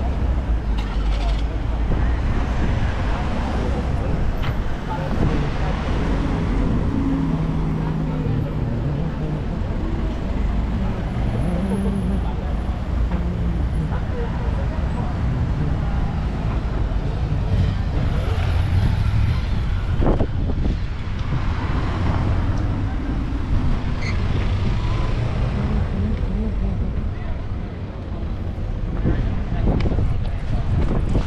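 City street ambience: steady road-traffic noise with passers-by talking.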